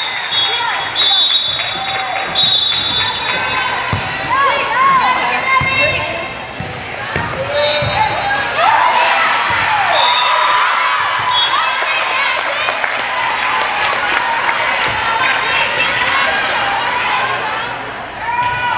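Indoor volleyball rally in a large hall: voices calling and cheering across the court, sharp hits of the ball, and repeated short high squeaks.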